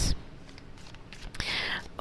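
Quiet pause, then a short breathy hiss about one and a half seconds in: a person's in-breath or whisper just before speaking.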